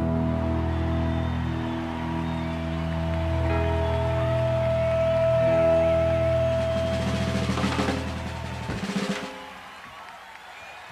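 Rock band music holding a sustained chord over a drum roll, which ends about nine seconds in.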